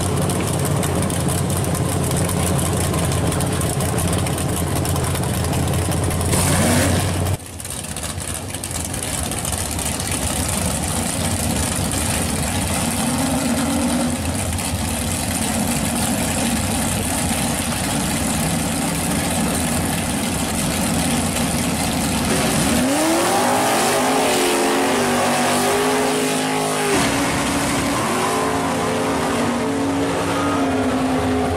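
V8 drag cars running at a drag strip. A steady engine note cuts off sharply about seven seconds in and gives way to a rougher engine sound. From about 23 seconds, engines rev up in pitch and hold several times as two cars stage and pull away.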